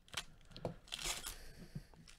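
A trading card pack's plastic wrapper being torn open and crinkled by hands in nitrile gloves: faint short crackles, with a longer rustling tear about a second in.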